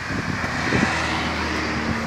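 A motor vehicle running steadily in the background, a low even hum under a constant hiss.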